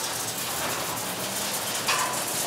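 Steady outdoor background noise of a working recycling yard: an even rushing hum with no distinct events.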